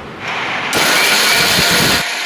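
Electric mixer grinder running, its blade grinding potato slices in a steel jar. It makes a loud, steady whirr that gets louder and brighter about two thirds of a second in.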